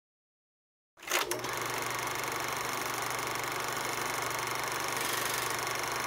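Film projector running: a couple of clicks as it starts about a second in, then a steady whirring clatter with a rapid flutter.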